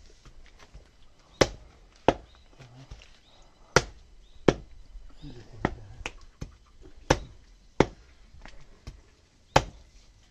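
Heavy knife chopping mutton on a chopping block: about eight sharp chops, mostly in pairs about two-thirds of a second apart.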